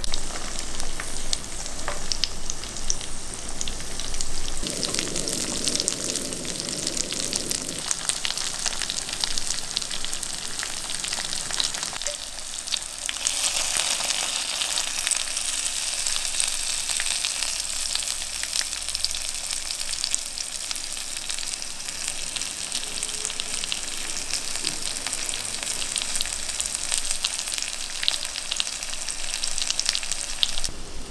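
Tofu frying in hot oil in a pan, a dense, steady sizzle and crackle that grows louder and brighter about halfway through.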